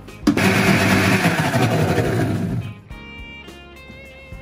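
Electric blender with a small steel jar running in one burst of about two and a half seconds, grinding coriander, mint, garlic and curd into a smooth chutney, then stopping abruptly.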